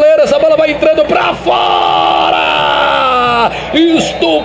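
A male football commentator's excited rapid speech breaks into one long held shout of about two seconds, its pitch sliding slowly down, in reaction to a goalkeeper's save of a close-range header.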